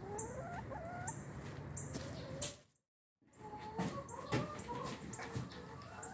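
Domestic hens clucking in short rising calls around feed. The sound drops out completely for about half a second halfway through, then more clucking follows with a few sharp knocks.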